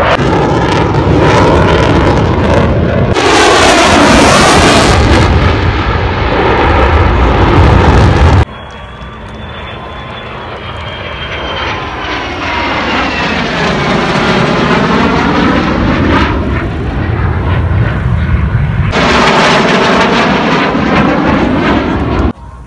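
Loud jet noise from fighter jets flying past, the first an F-35 making a low pass, with a sweeping, phasing whoosh as each one goes by. About eight seconds in the sound cuts suddenly to another jet pass that builds and falls away, and it cuts again to a louder pass near the end.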